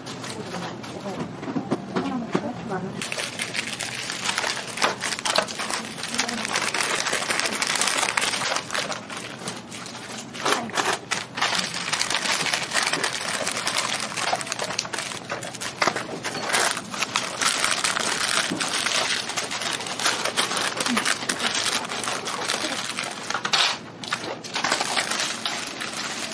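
Paper sandwich wrappers being folded around sandwiches: continuous rustling and crinkling of paper with many small crackles, starting a few seconds in.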